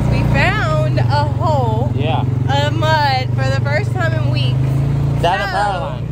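ATV engine running at a steady pitch while the riders talk over it; the engine note changes about five seconds in.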